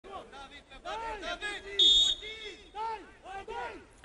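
Referee's whistle: one short, shrill blast about two seconds in, signalling that the free kick can be taken, over voices shouting around the pitch.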